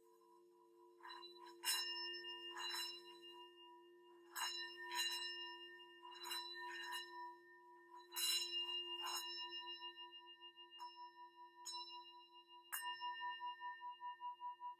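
Hand-held hammered metal singing bowl struck with a mallet about a dozen times, its ringing tones layering over one another. After the last strike, near the end, the ring wavers in a steady pulse.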